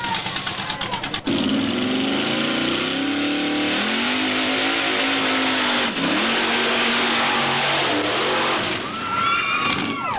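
Off-road mud-bog vehicle's engine running at high revs as it churns through a mud pit. The pitch climbs, holds high and drops briefly about six seconds in. A voice calls out near the end.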